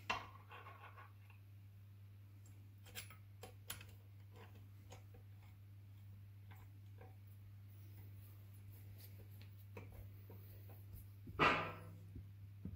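Faint scattered clicks and scrapes of a T-handle Torx driver and locking pliers on metal as a bumper-spike screw is done up on a Stihl MS660 chainsaw, over a steady low hum. A short, louder rasping noise comes near the end.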